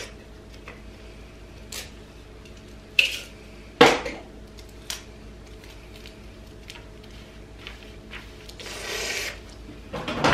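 Clear tape being pulled from a desk tape dispenser and torn off, heard as a few sharp clicks and taps, the loudest about four seconds in. A short rustle near the end as the taped note is pressed onto the apron, over a faint steady hum.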